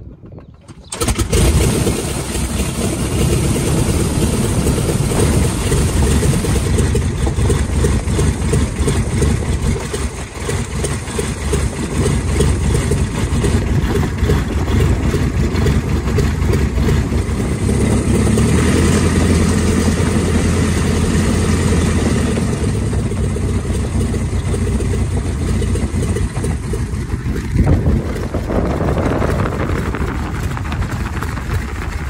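The four-cylinder de Havilland Gipsy Major engine of a DH.82A Tiger Moth biplane running at low power, heard from the open cockpit. The sound comes in suddenly about a second in and runs on steadily, with the engine note strengthening for a few seconds in the middle.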